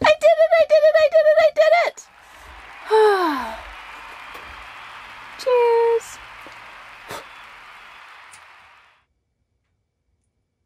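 Propane hissing steadily from a stove burner of a newly plumbed domestic gas stove as it is being lit, showing that gas is reaching the burner. The hiss cuts off suddenly near the end. Over it a person's voice makes a quick run of notes at the start, then a drawn-out falling exclamation and a held one.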